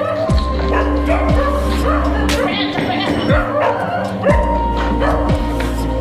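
Dramatic film score music: held tones over a deep bass, with a falling swoop roughly once a second. Over it there are yelping, dog-like sounds.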